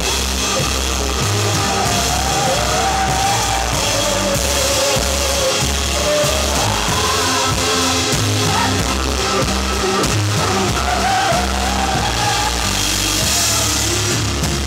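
A live indie rock band playing loudly: drum kit and bass driving a steady beat under keyboard/synth, with a wavering melodic line above.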